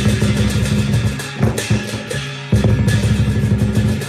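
Lion dance percussion: a fast, rolling drum beat, broken about one and a half seconds in by a loud cymbal crash and a few single strikes, then a second fast drum roll from a little past halfway.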